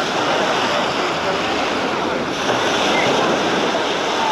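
Small waves breaking and washing up on a sandy shore: a steady surf hiss, with faint voices of beachgoers in the background.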